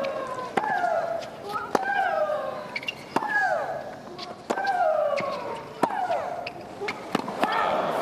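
A fast tennis rally: a ball struck hard with a racquet roughly every second, each shot followed by a player's long, falling shriek. About six shrieks in all.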